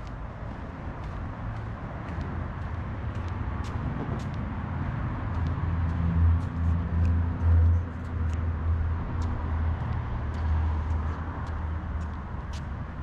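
Outdoor ambience while walking: a low rumble that swells and pulses about six to eight seconds in, with faint light clicks of footsteps on pavement.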